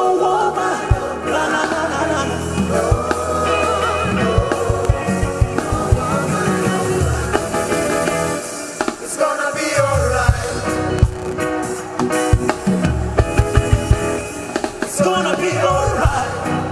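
Live band music: electric guitars, bass and drums, with a group of singers singing together. A low bass line and regular drum hits run under the voices.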